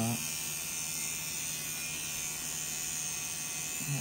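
Electric tattoo machine running with a steady hum.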